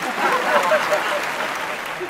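A crowd applauding, with some voices mixed in; the clapping swells over the first second and then tails off.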